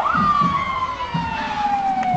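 Emergency vehicle siren winding down: a rapid up-and-down yelp breaks off right at the start into one long tone that falls slowly in pitch.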